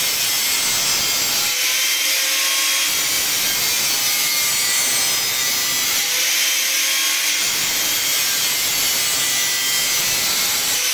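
Electric angle grinder with a cut-off disc cutting through a stainless steel pipe: a loud, steady grinding that eases twice, briefly, when the disc is lifted off the pipe and spins free, then bites again.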